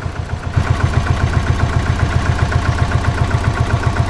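Auto-rickshaw engine idling with a fast, even putter that grows louder about half a second in.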